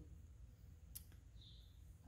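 Near silence: room tone, with a single faint click about halfway through.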